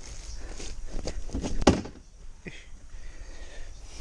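A few thumps and knocks, probably from handling work and footsteps around a plastic water tank. The loudest comes a little under two seconds in, and a shorter knock follows about half a second later.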